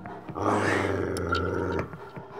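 Mastiff giving a low growl lasting about a second and a half, starting about half a second in: a warning at the front door, as if someone were on the other side.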